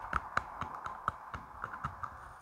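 A pencil clicking against teeth close to the microphone: a steady run of sharp little clicks, about four a second.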